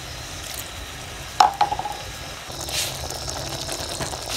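Pork curry sizzling and simmering in a pot, with one sharp clink about a second and a half in.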